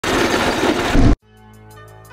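Go-kart driving on the road, heard from an onboard camera as loud engine and wind noise that cuts off suddenly just over a second in. Background music with steady held tones and a light beat follows.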